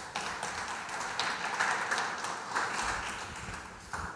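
Audience applauding, a steady patter of hand claps.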